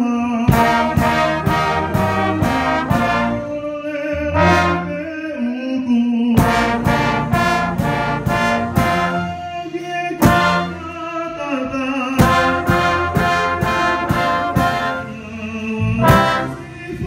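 Brass band of trombones and tubas playing together: phrases of short, accented chords in an even rhythm, broken by held low notes between phrases.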